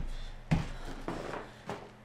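A thump of feet landing on a wooden floor about half a second in, as a half burpee's jump brings the feet in from a plank. Fainter knocks and shuffles follow as a sandbag is picked up and swung.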